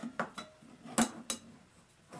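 A thin metal cookie-tin lid being fitted onto a small metal mess-kit pot: four light metal clinks, the loudest about a second in.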